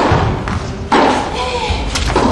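A tennis ball struck by a racket: a sharp thud echoing in a large indoor hall, followed about a second in by a person's voice.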